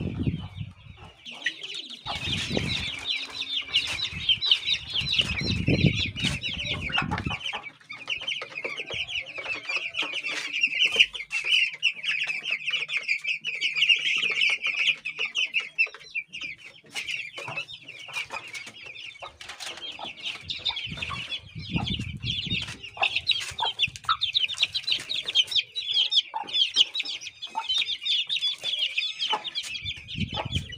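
Many young chicks peeping at once, a dense, unbroken chorus of high, rapid cheeps starting about a second in. Low rumbling noise comes and goes underneath at times.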